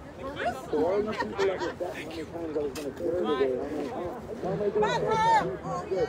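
Several people talking at once, a chatter of voices with no single clear speaker.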